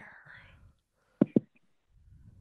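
Two quick, sharp pops a little over a second in, close together, heard over a conference-call line, after faint breathy noise at the start.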